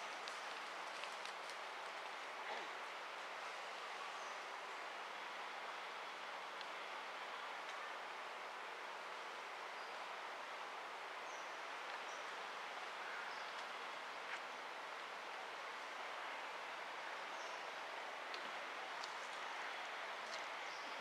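Steady outdoor forest ambience, an even hiss, with a few faint short high bird chirps scattered through it.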